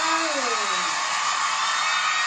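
A steady, loud hiss like blowing air, with one short falling tone sliding down in the first second.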